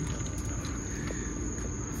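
Steady outdoor background noise: a low rumble under a thin, steady high-pitched tone, with no distinct events.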